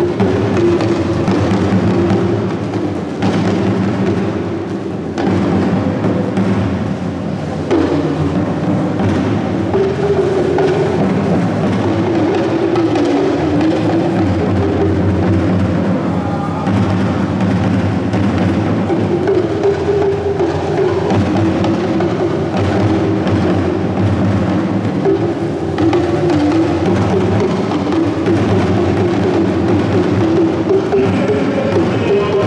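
Hourglass talking drums beaten with curved sticks, playing a continuous dance rhythm whose pitch bends up and down as the drums are squeezed.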